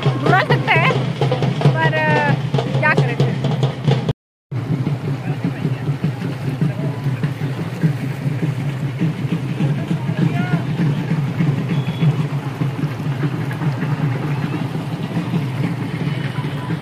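Voices and music for the first few seconds. After a brief cut about four seconds in, a steady rush of shallow river water flowing over stones.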